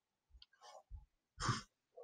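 A man's faint breathing and small mouth clicks, with one short, sigh-like breath about a second and a half in.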